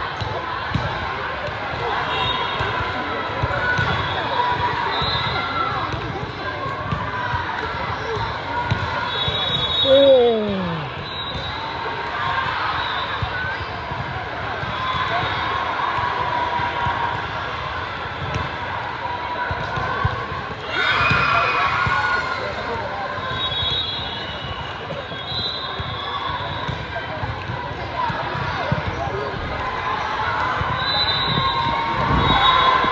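Busy volleyball hall ambience: balls thudding on the floor and off hands across the courts, over a crowd of many voices. One loud shout falls in pitch about ten seconds in, and another loud call comes around twenty-one seconds.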